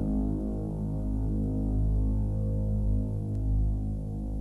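Electroacoustic tape music: a dense low drone of many sustained tones that slowly swell and pulse, with one faint click about three seconds in.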